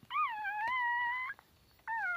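Newborn puppy crying: one high, wavering cry lasting a little over a second, then a second cry starting near the end.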